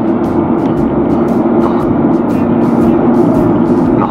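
Steady in-cabin drone of a car's engine and tyres while driving along a road, with background music underneath.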